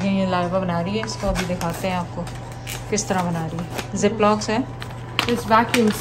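Speech: a woman talking, over a steady low hum.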